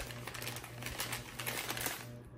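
Brown paper bag rustling and crinkling with many small crackles as hands open it and reach inside.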